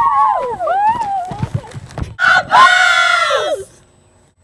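Girls' voices whooping with gliding pitch, a few low thuds in the middle, then one loud, high shriek lasting about a second and a half that drops in pitch at its end and cuts off sharply.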